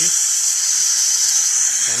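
Slow-speed dental handpiece spinning a rubber prophy cup to polish a molar with pumice paste, together with the suction, giving a steady high-pitched hiss.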